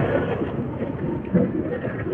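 Roadside street background: a steady murmur of passing traffic with faint voices in the distance.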